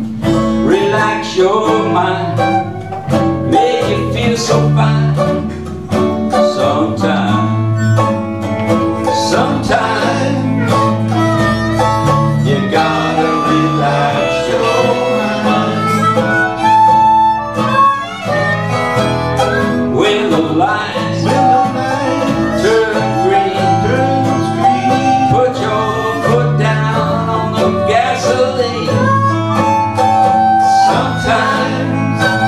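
Old-time string band playing live: acoustic guitars strumming, a fiddle bowing and an upright bass, with a man singing.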